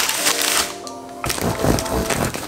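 Background music, with a knife sawing through the hard crust of a floured sourdough loaf in the second half, a crackly, crunchy cutting sound.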